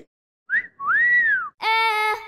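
A wolf whistle: a short upward chirp, then a longer note that rises and falls. Just before the end it is followed by a steady held note with a voice-like quality.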